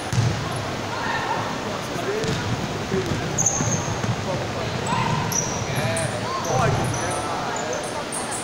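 Basketball being dribbled on a hardwood court during live play, with repeated thuds. Short high squeaks of sneakers come in a few times, and players' voices call out near the end.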